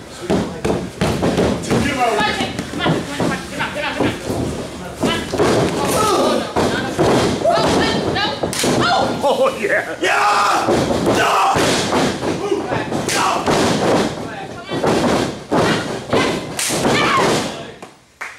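Bodies hitting a wrestling ring's mat, repeated thuds and slams, over near-constant voices.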